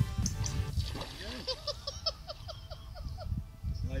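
Wind buffeting the microphone in gusts, with background music under it. In the middle comes a run of about eight short, rising-and-falling voiced notes.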